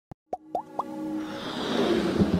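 Intro sound effects for an animated logo: a click, then three short plops each rising in pitch, about a quarter second apart, followed by a swelling whoosh as synthesized music builds.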